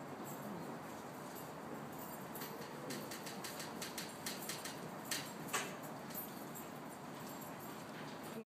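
Steady background noise with a scattered run of light clicks and taps in the middle of the stretch, the loudest about five seconds in, from movement around a small dog being handled.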